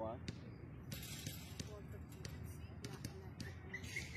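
A basketball bouncing on an outdoor court, dribbled in a steady rhythm of about one bounce every half second or so.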